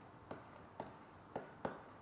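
A stylus writing on a tablet, faint: about four short taps and scratches as the pen strokes land on the screen.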